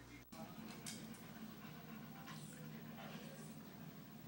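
A small dog panting faintly with its tongue out, in a few short breathy bursts over a low steady hum.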